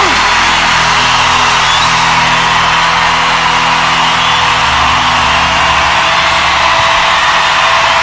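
Live rock band holding steady sustained chords under loud, continuous crowd noise from a large concert audience, right after the lead vocal line ends.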